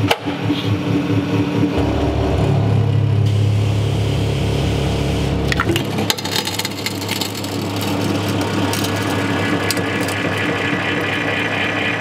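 200-ton hydraulic press running as its ram bears down on a loudspeaker, with a steady deep pump hum that changes about halfway through. Sharp cracks and snaps come from the speaker's frame and magnet assembly giving way as the load climbs past 100 tons.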